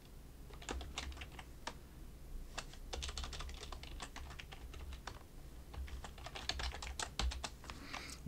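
Computer keyboard typing in quick irregular runs of key clicks as a password is entered and then entered again in the confirm field.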